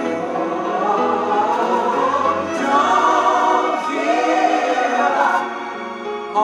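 A recorded gospel song, with a choir singing together.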